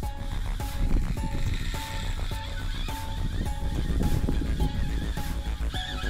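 A baitcasting reel's drag screaming as a hooked fish makes a run and takes line, under background music with a steady beat.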